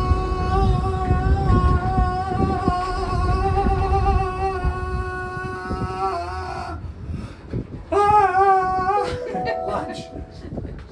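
A child's voice holds one long, steady sung note for about seven seconds, then a second, shorter one near the end. A low rumble from the moving gondola cabin runs underneath.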